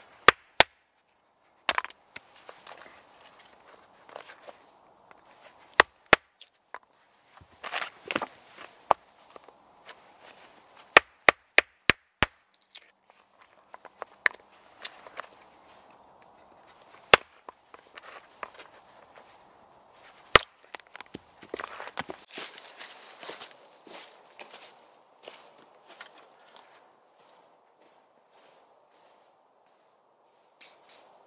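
A bushcraft knife being batoned through small splits of wood on a chopping block: a wooden baton knocks sharply on the knife's spine, in single strikes and a quick run of about five, with rustling of wood being handled between strikes.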